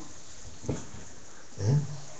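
A pause in a man's talk with a steady background hum. A single short sound comes about two-thirds of a second in, and the man says a brief 'Yeah?' near the end.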